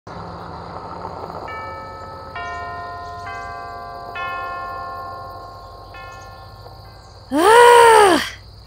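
A school chime bell rings a slow run of about six notes, each held and overlapping the next. Near the end comes a loud, drawn-out high yell whose pitch rises and then falls.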